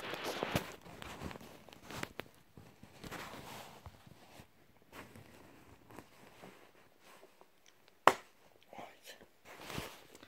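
Handling noise as a small plastic push-on cap is worked off the end of a digital night-vision scope on soft bedding: light rustling and small clicks, with one sharp click about eight seconds in.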